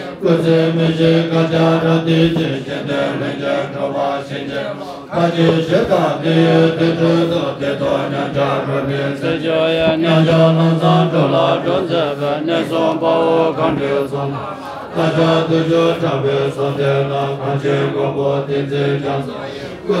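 Low-pitched Tibetan Buddhist prayer chanting, sung on a near-steady pitch in long phrases with brief pauses between them, about five and fifteen seconds in.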